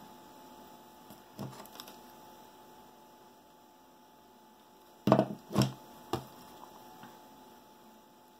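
A hot glue gun is set down on the work table: three quick knocks about five seconds in, with a lighter knock earlier, over a faint steady hum.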